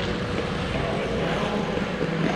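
Steady droning noise of an indoor ice rink hall during a hockey game, with skaters moving on the ice.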